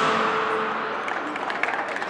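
Gymnastics floor-exercise music ending within the first second, followed by the audience starting to clap.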